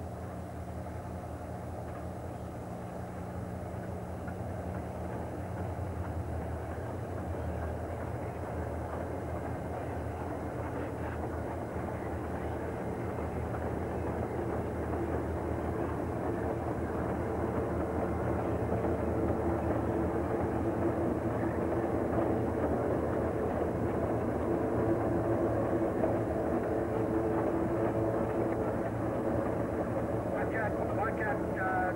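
Diesel freight locomotives approaching, their engine drone growing steadily louder.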